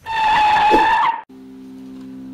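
A loud sound effect: one high steady tone over a hiss, lasting just over a second and cutting off abruptly, followed by a quieter low steady hum.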